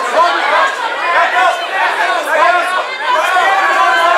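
Crowd of fight spectators shouting over one another, many voices at once, loud and continuous.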